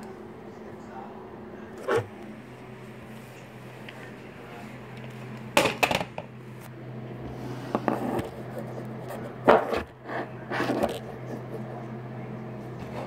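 Modified Nerf Hammershot blaster being worked and fired in slam-fire fashion: a scattered series of sharp plastic clacks, bunched in the middle, with the sharpest about two-thirds of the way through, over a steady low hum.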